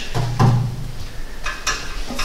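A man's short hesitant voiced "uh" in a pause of speech, then a quieter stretch with a few faint ticks, over a steady low hum.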